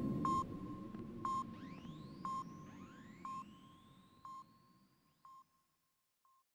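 Sci-fi sound effect: a sonar-style electronic ping repeating about once a second, six times, each fainter than the last, with faint rising whistling sweeps. Under it, the low rumble of a blast fades away.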